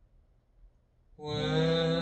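Near silence, then about a second in, music starts playing over a hi-fi system with an MSB Select 2 DAC: a steady, held low tone with a dense stack of overtones, voice-like and chant-like.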